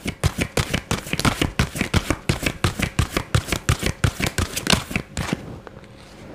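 A deck of oracle cards being shuffled by hand: a rapid run of dry card clicks that stops about five seconds in.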